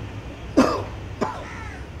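A man coughs: one sharp cough about half a second in, then a smaller second cough a little after a second.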